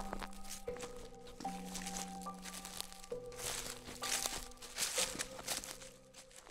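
Soft background music of held notes that change about once a second, over footsteps crunching on a dirt trail strewn with dry leaves. The crunching grows busier past the middle, and both fade near the end.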